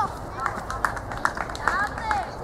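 Short shouts of voices on a youth football pitch during play, several brief calls with a few sharp taps between them.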